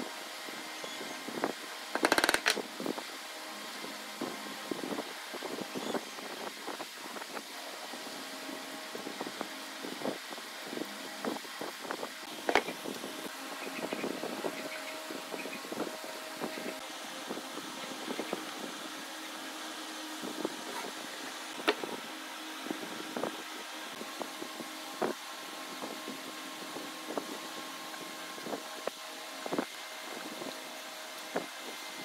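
A steady machine hum runs under scattered clicks and knocks as boards, a tape measure and a glue stick are handled on a workbench. The loudest knock comes about two seconds in, and a few sharper ones follow later.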